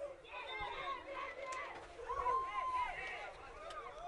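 Distant voices of players and onlookers calling out across an open football pitch, faint and scattered, with one drawn-out shout about two seconds in.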